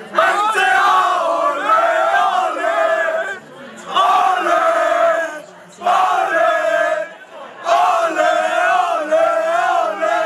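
A small group of young men singing a football chant together, loud and full-throated, in four phrases with short breaks between them.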